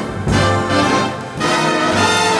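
Orchestral brass section, trombones to the fore, playing a swelling instrumental fill between vocal lines of a 1960 swing ballad with studio orchestra. There are two chord swells, one just after the start and another about halfway through.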